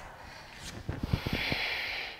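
A woman's forceful breath out, a hissing exhale of about a second, as she lowers into a side plank. A few soft low knocks come just before it.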